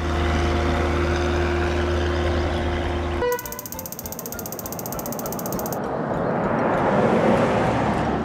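Cartoon sound effects for a toy-brick tractor: a steady low engine drone for about three seconds that cuts off suddenly, followed by a rapid, high ratcheting rattle as the tractor comes apart, then a hiss of noise swelling near the end.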